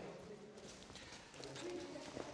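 Quiet room tone with a faint, short hummed voice sound about a second and a half in.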